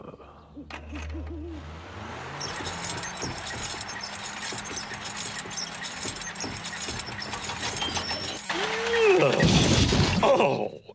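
Cartoon night sound effects: an owl hooting briefly, then a steady mechanical hum and hiss as a crane hoists a garden shed, growing louder near the end.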